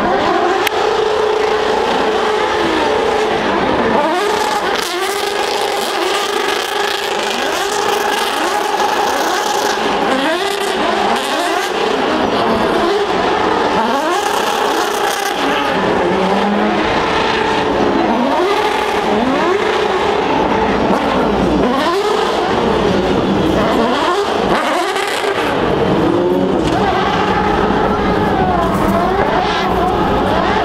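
Open-wheel single-seater race cars passing one after another at racing speed, their engines climbing in pitch through gear after gear, with several cars often heard at once.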